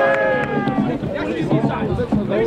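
Shouting voices from players and touchline spectators at an outdoor football match: one long drawn-out call ends about half a second in, followed by shorter calls.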